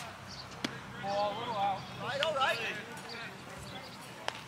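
A single sharp knock of a pitched baseball's impact a little over half a second in, followed by voices calling out from the field and sidelines in two short stretches.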